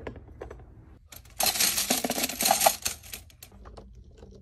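A hand rummages through a plastic bin of small pink pieces, and for about a second and a half they clatter in a dense rattle of many small clicks. Before that, a few light taps.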